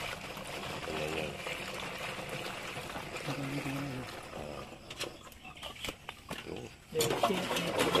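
Water pouring and trickling from a plastic jerrycan into a stainless-steel knapsack sprayer tank, filling it to mix with the herbicide already inside. The pouring dies away a little past halfway, followed by a few light clicks.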